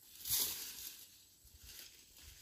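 Leafy sweet potato vines rustling as they are pulled up and tossed aside during hand digging, with one loud rustle about a third of a second in and softer scraping after.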